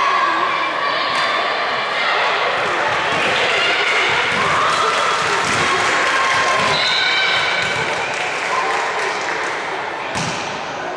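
Many high-pitched girls' voices shouting and calling out at once during a volleyball rally, with a few sharp thuds of the ball being hit.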